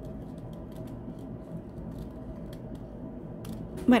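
Scissors snipping through a printed book page while cutting out a circle: a string of small, irregular snips over a steady low hum.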